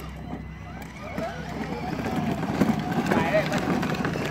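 A child's battery-powered ride-on toy jeep driving, its small electric motor and gearbox running with a steady low hum as the plastic wheels roll over concrete. Voices of people talking grow louder in the second half.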